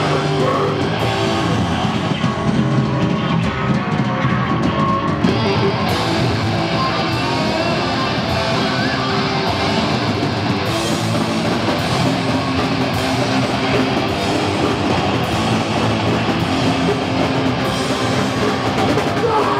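Live punk rock band playing loudly and steadily: distorted electric guitars, bass and a drum kit, getting brighter in the top end about five seconds in.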